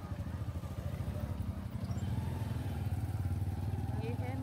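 A motorcycle engine running close by, a low fast-pulsing rumble that gets louder after the first second or so.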